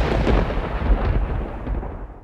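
Thunder sound effect: a rolling rumble, loudest at the start and fading away over the two seconds.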